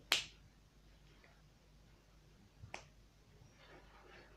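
Two sharp clicks, the first louder with a brief ringing tail, the second about two and a half seconds later.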